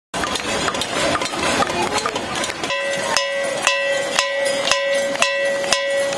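Protesters banging pots and pans, a dense stream of metal clanks. About three seconds in, a metal pan close by starts being struck about twice a second, each hit renewing a steady metallic ring.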